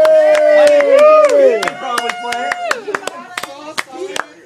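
Scattered hand claps from a small audience, with voices calling out long, drawn-out cheers over the first couple of seconds.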